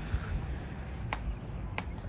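Two sharp clicks, about a second in and near the end, from rainbow lorikeets working at a tree branch with their beaks, over a low steady rumble.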